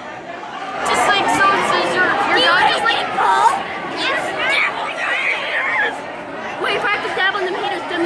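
Close, overlapping young voices talking and chattering, unclear in words, with more voices from a large room behind.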